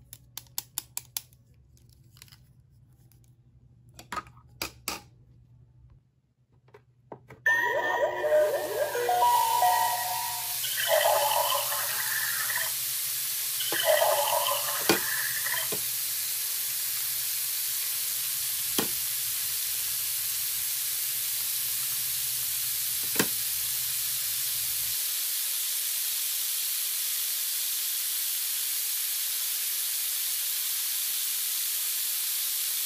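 Battery-operated pink toy barbecue grill switched on: a steady electronic sizzling hiss starts about a quarter of the way in and keeps going, with a short electronic tune over it at first. Before it come light clicks of plastic tongs and spatula, and later a few sharp taps as plastic toy food is set on the grill plate.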